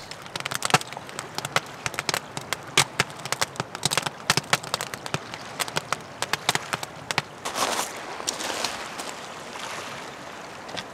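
Wood fire crackling inside a stacked stone-and-clay kiln, with many sharp, irregular snaps and pops. A soft hiss swells briefly near the end.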